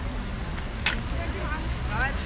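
Outdoor crowd ambience: a steady low rumble with scattered snatches of people talking, and one sharp crack about a second in.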